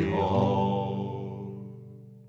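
A man's voice holding the last sung note of a folk song over a ringing nylon-string guitar chord, fading steadily away near the end.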